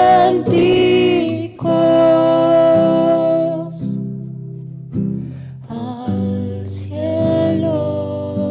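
A woman singing long held notes to her own acoustic guitar in a live studio performance. The voice pauses briefly about four seconds in, then picks up again over the guitar.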